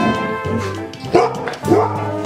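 A golden retriever barking twice, two short barks about half a second apart starting a little after a second in, over background music with brass.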